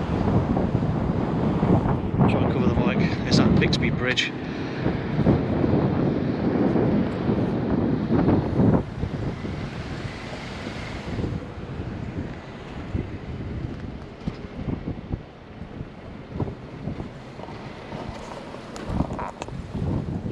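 Wind buffeting the camera's microphone in strong gusts that ease off about halfway through.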